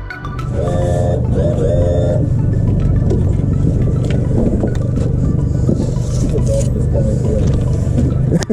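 Outboard motor of a small fishing boat running steadily under way, with water and wind noise. Two short wavering calls sound about a second in.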